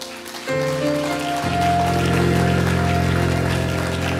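Keyboard playing soft, sustained chords under the sermon. The held chords swell louder in two steps, about half a second in and again about a second and a half in.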